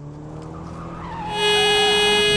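A car engine approaching and rising in pitch. About one and a half seconds in, a loud blaring car horn and squealing tyres come in together.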